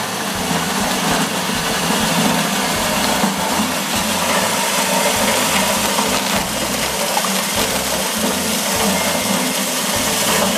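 Small motor-driven coffee huller running steadily, a constant mechanical whir with a rushing hiss, as parchment coffee passes through it and the hulled green beans and husk pour from its chute.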